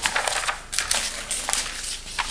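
A sheet of paper being handled and rustled, a run of irregular crackles.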